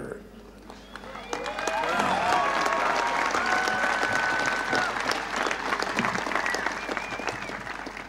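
Crowd applauding and cheering, with a few held calls or whistles above the clapping. It builds about a second in and fades toward the end.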